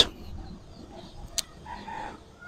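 A rooster crowing faintly. A single sharp click comes about halfway through.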